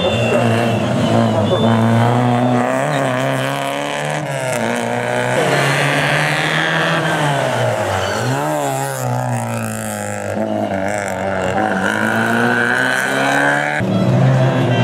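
Rally car engine revving hard on a street stage, its pitch climbing and dropping through gear changes and braking, with a deep dip and pull-back up about two-thirds of the way in.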